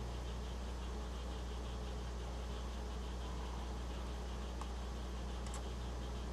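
Steady low hum with an even hiss, and a couple of faint clicks about two-thirds of the way through.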